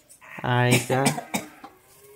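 A voice speaking briefly, over light knocks and clinks of fruit being handled in a plastic colander and set into a metal bowl.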